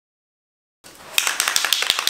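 Aerosol spray paint can spraying black paint onto foam: a hiss with a rapid run of sharp clicks. It starts suddenly about a second in, after dead silence.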